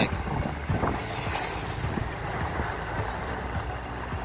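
Steady noise of a moving vehicle with wind on the microphone, heavy in the low end, with a brief hiss about a second in.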